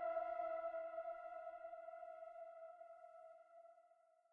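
The last held note of the background music, a chord of several steady tones, ringing on and slowly fading out.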